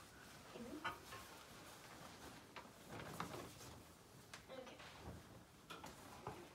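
Faint handling sounds in a quiet small room: a cloth flag rustling and a few light knocks and clicks as it is taken out and unfolded, with faint murmuring in the background.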